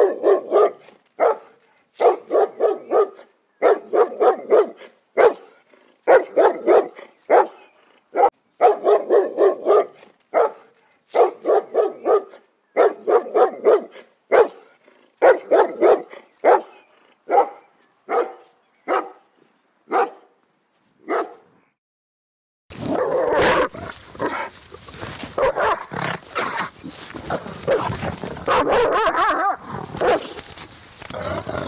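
A dog barking in quick bursts of several barks each, about one burst every second and a half, the bursts growing shorter and fainter until they stop about twenty seconds in. After a brief silence, a louder, denser and rougher stretch of dog sounds starts and runs on, with a noisy background.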